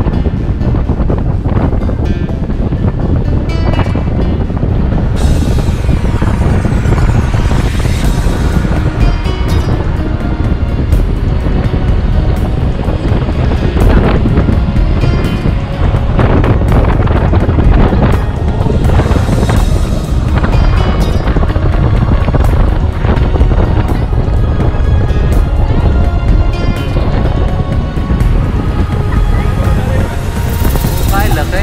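Background music playing continuously over a low, steady rumble from a car being driven.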